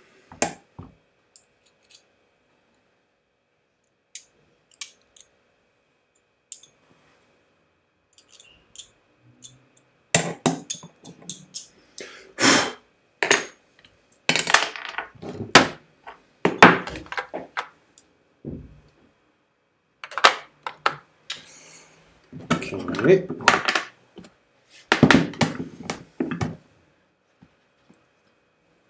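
Hand tools and small parts being picked up, set down and worked on a wooden workbench: a scatter of clicks, knocks and clinks, sparse at first, then in dense bursts from about ten seconds in.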